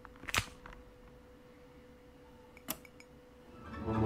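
A wall light switch flicked with a sharp click about a third of a second in, over a faint steady hum. A second sharp click follows near the three-quarter mark, and a swell of sound rises in the last half second.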